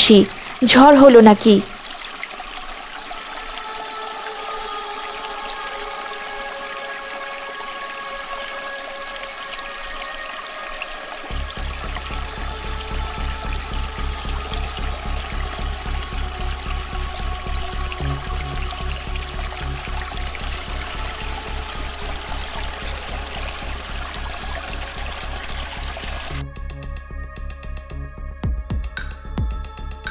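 Background music for an underwater scene: sustained chords over a water bubbling or pouring sound effect. A low pulsing beat joins about a third of the way through, and the music changes abruptly near the end.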